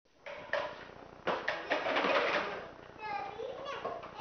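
A clattering noise with a few sharp knocks, then a young child's high voice calling out in bending, sing-song sounds.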